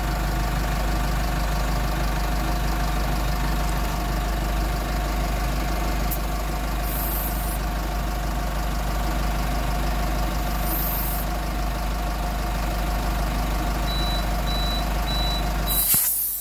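Automatic tyre inflator cabinet running with a steady hum while it fills a pickup tyre, with two short hisses of air partway through. Near the end a quick run of high beeps signals that the set pressure of 33 psi is reached, and a burst of air hiss comes as the chuck is pulled off the valve.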